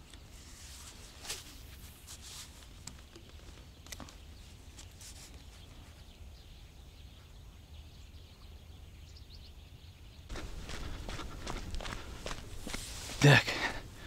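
Footsteps and rustling through dry grass on a bank, starting about ten seconds in after a quiet stretch with a few light clicks. A brief loud vocal sound comes near the end.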